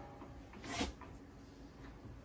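One soft click from a Suburban RV stovetop's spark igniter a little under a second in, otherwise faint; the far-left burner is not catching.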